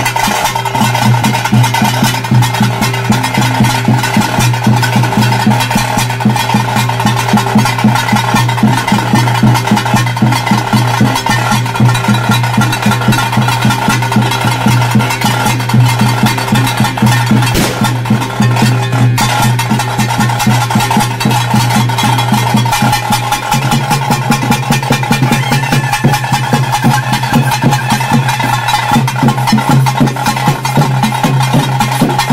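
Bhuta kola ritual music: fast, dense drumming over a steady, held pipe drone. The low drone shifts about 23 seconds in.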